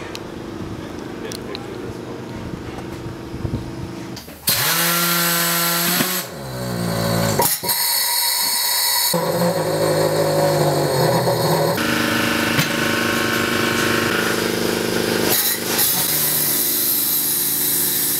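Coats tire changer mounting a stretched 225/45-15 tire onto a 15x9 wheel: the machine's motor hums, its pitch rising and falling as it works. Loud rushing noise comes in about four seconds in and again near the end.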